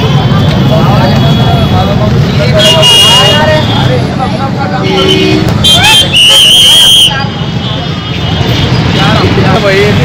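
Busy street: a crowd of voices talking over steady traffic rumble. A vehicle horn sounds loudly for about a second just past the middle, with shorter toots a few seconds earlier.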